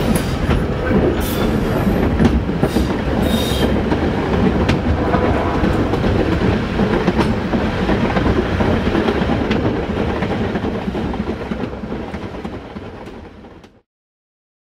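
Metre-gauge train running along the track with a steady rumble, its wheels clicking now and then over the rails. The sound fades out near the end.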